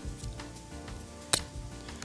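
Soft background music with one sharp clink about a second and a half in: a metal spoon tapping against a bowl.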